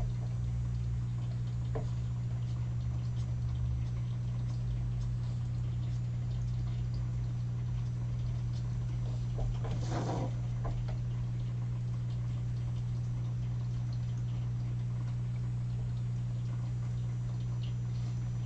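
A steady low hum under faint scratching of an alcohol marker on paper, with a brief rustle of the paper sheet being moved by hand about ten seconds in.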